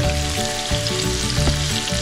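Pork and tomato wedges sizzling steadily in hot oil in a frying pan.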